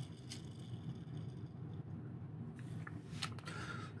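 Faint handling noises from a Hot Wheels die-cast car, with a few light clicks in the second half as it is set down on a cutting mat, over a low steady hum.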